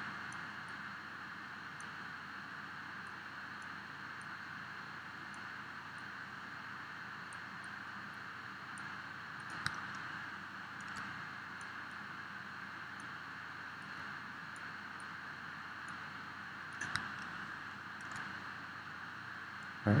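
Low, steady background hiss of room tone and microphone noise, with two faint clicks, one about ten seconds in and one about seventeen seconds in.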